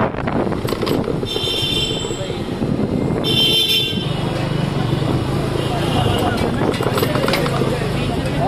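Motorcycle ride through busy street traffic: the engine hums under street noise and voices. Two high-pitched horn toots come about a second in and just past three seconds, with a fainter one near six seconds.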